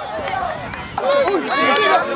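Many high children's voices shouting and chattering at once, with one long high-pitched shout held near the end.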